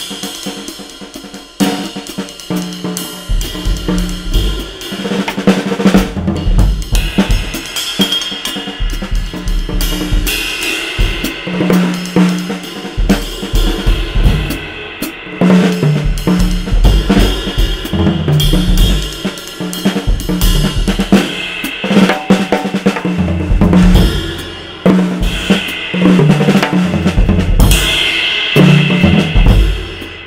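Acoustic drum kit played with sticks: a continuous groove of cymbal, snare, tom and bass drum strokes. It starts lighter, and heavier low drum hits come in a few seconds in.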